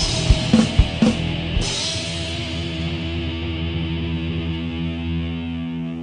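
Hardcore punk band ending a song: a few last drum and cymbal hits, then a distorted electric guitar chord held and left ringing for about four seconds.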